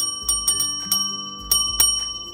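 A desk service bell (counter call bell) struck rapidly by hand, about six dings in two seconds, each one ringing on.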